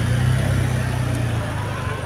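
City street traffic: car engines running close by in a steady low drone.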